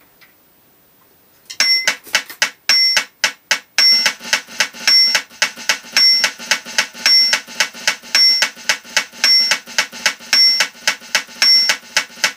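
Fast metronome from an electronic drum module: an accented two-tone beep about once a second with clicks between, and drumsticks playing rapid single strokes on a Roland mesh snare pad. It starts about a second and a half in.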